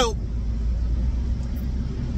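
Steady low rumble of road and engine noise inside a car's cabin as it drives along a highway.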